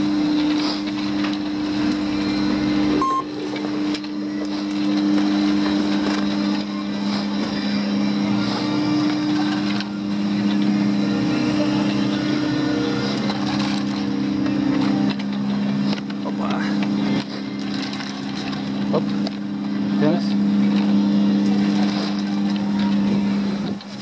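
Ski lift drive machinery humming steadily in two held tones, one of which drops out partway through, with scattered clicks of skis and poles. The hum cuts off near the end.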